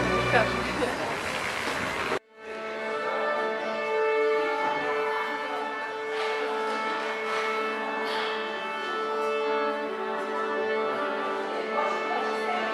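Music that cuts off abruptly about two seconds in, followed by a chamber orchestra of bowed strings with an accordion playing long held notes in a concert hall.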